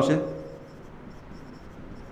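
Marker pen writing on a whiteboard: faint, short scratching strokes as he letters on the board.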